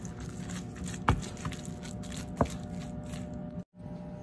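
Quiet kitchen handling noise as black pepper is added to a bowl of salmon patty mixture, with two sharp taps about a second and two and a half seconds in. The sound cuts out for a moment near the end.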